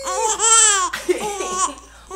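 Baby's high-pitched laughter: one long laugh in the first second, then a few shorter bursts.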